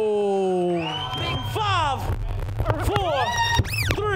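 DJ scratching a vinyl record on a turntable: a held vocal sample slides down in pitch over the first second, then quick back-and-forth scratches rise and fall in pitch over a steady bass beat, getting faster and higher near the end.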